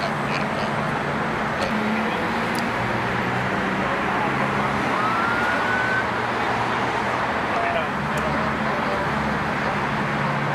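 Steady freeway traffic noise with idling vehicle engines. A short rising whistle-like tone comes about five seconds in.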